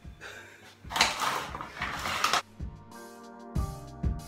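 Plastic food packaging crinkling as it is handled, loud for about two seconds; then background music with a beat comes in.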